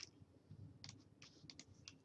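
Near silence with faint, scattered clicks of a computer keyboard and mouse, light taps at uneven intervals.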